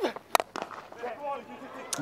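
A single sharp crack of a cricket bat striking the ball, about a third of a second in, with faint crowd voices after it.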